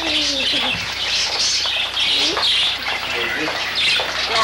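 Birds chirping in dense, repeated high chirps that come in waves about every half second, with a few lower sliding calls near the start and around the middle.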